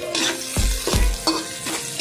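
Chopped onions frying in a wok and being stirred around by hand, with a light sizzle, over background music with a steady beat.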